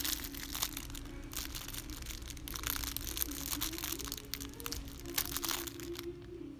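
Clear plastic packaging crinkling and crackling in irregular bursts as a packaged craft item is handled by hand.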